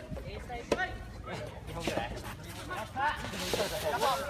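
Voices of people calling and shouting at a distance, in short separate bursts, with a single sharp knock under a second in.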